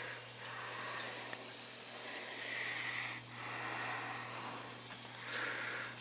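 Steady hiss of water rushing through an oil-fired boiler's feed (fill) valve, just freed after sticking, as the air-bound hydronic system refills. A constant low hum runs beneath it.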